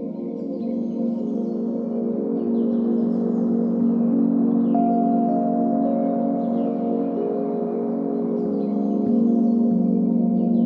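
Ambient music: a slowly swelling bed of sustained, layered tones whose notes shift only gradually, with a faint high figure repeating about once a second above it.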